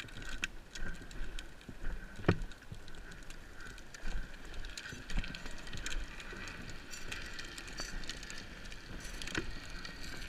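Wheels rolling fast over asphalt on a downhill run: a continuous rough rumble with a steady higher hum, broken by many scattered clicks and knocks.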